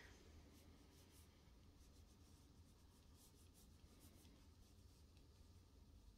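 Faint scratching of handwriting on card stock: a name being written in short strokes over a low room hum.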